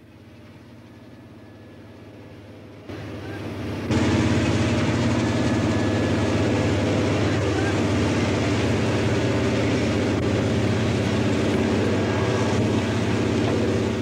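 Light helicopter's rotor and engine running steadily while it hovers low, a continuous rotor chop. It comes in faintly, then steps up louder about three and four seconds in.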